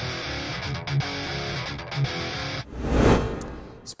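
Short music sting with guitar, then a whoosh that swells and fades out about three seconds in: a segment-transition jingle.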